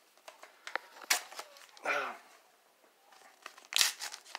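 A taped-up paper mailing envelope being torn open by hand: a few short rips and crinkles, with the loudest rip just before the end.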